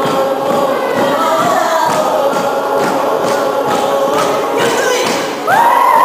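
A crowd of people singing together, many voices at once, over a steady thudding beat about twice a second. Near the end a louder voice swoops up in pitch and the singing gets louder.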